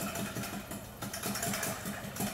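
A wire whisk beating milk and instant pudding mix in a glass batter bowl, in quick, regular strokes several times a second.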